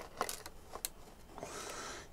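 Faint handling of a plastic blister pack of lubricant tubes: a few light clicks and taps against a quiet room.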